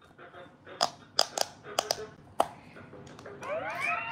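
Handheld pop-it quick-push game toy: about six sharp, irregular clicks over a couple of seconds as its buttons are pressed to start a round.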